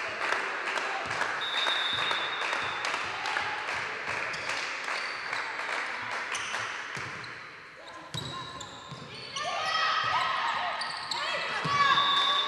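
Women's indoor volleyball rally: repeated sharp ball hits and footfalls on the hardwood court, with players' voices calling out. It grows louder in the last few seconds with short rising and falling cries and squeaks as the point ends.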